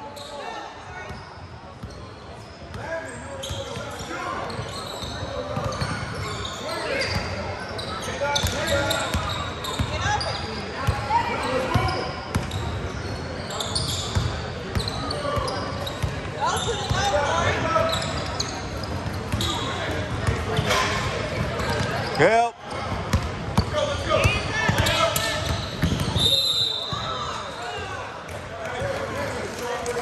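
Echoing gym sounds during a basketball game: voices of players and spectators calling out, with a basketball bouncing on the hardwood court. Near the end comes a brief, steady high whistle, typical of a referee's whistle stopping play.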